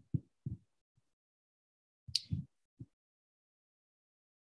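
A few short, soft low thumps in the first second, a sharper click about two seconds in and one more thump near three seconds: mouse and desk handling noise at a computer, picked up faintly by the microphone with dead silence between.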